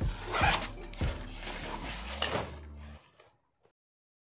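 Zipper on a nylon backpack being drawn in several short pulls. The sound cuts off about three seconds in.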